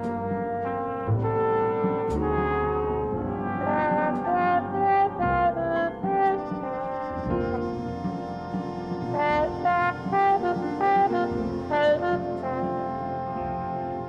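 Jazz trombone solo played with a plunger mute: a string of held and sliding notes, with the band's bass and accompaniment underneath.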